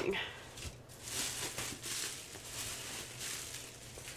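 Plastic bubble wrap rustling and crinkling as a hand digs through it, in a string of soft scrunches.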